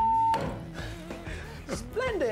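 A loud, steady, high electronic bleep that cuts off abruptly about a third of a second in, with a sharp knock, then quieter background music.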